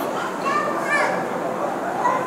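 Children's voices talking and calling in the background over a steady hiss.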